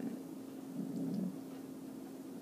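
A faint steady hum, with a soft closed-mouth "mmm" from a woman hesitating mid-sentence, about half a second to a second and a half in.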